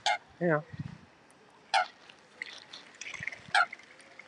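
Three short, sharp calls from mute swans and Canada geese crowding in to be fed, about one every one and a half to two seconds, with fainter scattered calls in between.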